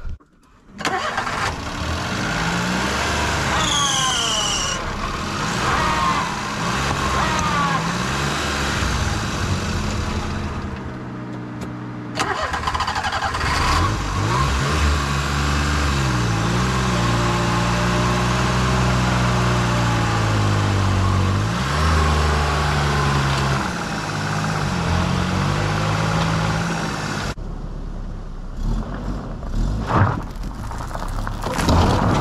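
Daihatsu Hijet mini truck's engine revving up and down repeatedly as the truck, stuck in mud, tries to drive out under its own power.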